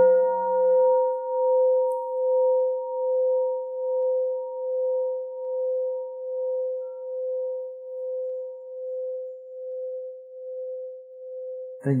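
A Buddhist bowl bell ringing out after a single strike: one long, slowly pulsing tone that fades away over about eleven seconds, its brighter overtones dying first.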